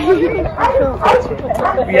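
People talking and a child laughing, with a low steady rumble underneath.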